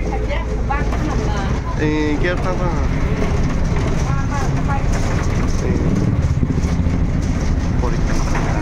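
Steady low rumble of a bus engine heard from inside the passenger cabin, with voices over it.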